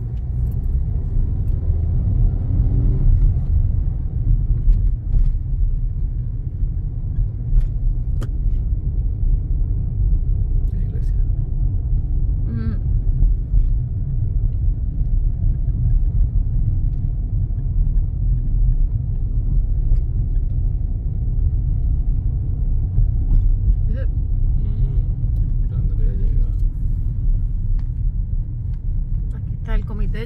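Steady low rumble of a car driving slowly, heard from inside the cabin: engine and road noise.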